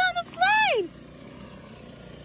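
A high-pitched voice calling out in the first second: a short broken call, then a longer one that rises and falls in pitch. After it comes a steady, quieter rushing noise.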